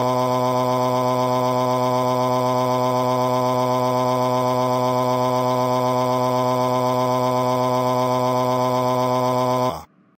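Computer text-to-speech voice reading out a long string of 'a's: one drawn-out 'aaaa' held at a single flat, unchanging pitch, robotic and without breaks. It cuts off abruptly just before the end.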